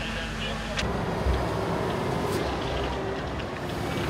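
Fire truck engine running steadily, with indistinct voices in the background.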